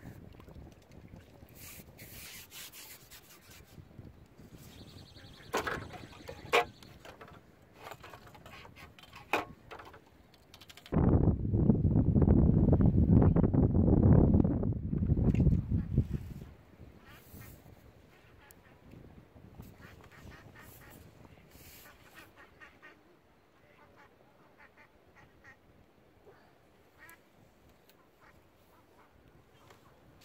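Strong wind buffeting the microphone: a heavy gust of about five seconds in the middle is the loudest sound, with lighter gusting and a few short sharp knocks before it.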